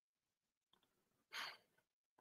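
Near silence, with one brief breath about one and a half seconds in.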